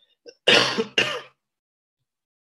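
A man clearing his throat twice in quick succession, two short rasping bursts about half a second apart.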